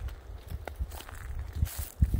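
Footsteps in dry leaf litter and twigs on a forest floor: a few soft, irregular steps with small crackles.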